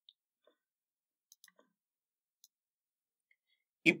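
Near silence with a few very faint, scattered clicks, then a man's voice begins right at the end.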